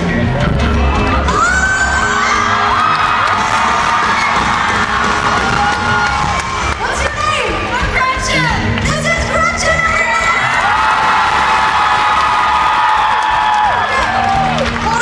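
Large concert crowd cheering and screaming, with many long, high-pitched screams held over the din.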